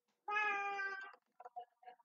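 A cat meowing once, one drawn-out call of about a second, followed by a few faint clicks.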